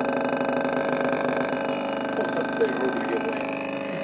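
Small subwoofer driver submerged in water, driven hard at the amplifier's maximum, giving a steady tone with many overtones.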